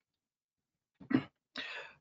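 A man's short cough about a second in, after a moment of dead silence, followed by a brief breathy exhale, heard through a video-call microphone.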